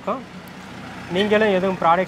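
A man speaking. There is a pause of about a second early on, filled only by faint steady background noise, before the speech resumes.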